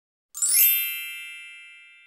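A chime sound effect: one bright ding, with a brief sparkle at its onset, about a third of a second in, then ringing out and fading over about two seconds.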